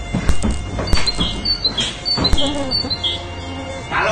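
Electric mosquito swatters swung through the air, with a few sharp cracks as they snap, over music and a run of short high chirping tones.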